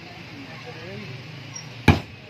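One sharp, heavy chop of a butcher's cleaver into meat on a wooden chopping block near the end, over faint background voices.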